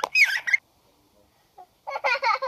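A young child's brief high-pitched vocal sound, squawk-like, in the first half-second. About a second of near silence follows, then voices start again near the end.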